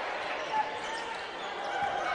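A basketball being dribbled on a hardwood court over a steady murmur of arena crowd noise.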